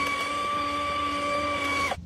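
Milwaukee M18 FUEL Angler powered fish tape's motor running at a steady whine as it feeds out the 240-foot steel fish tape, cutting off sharply near the end.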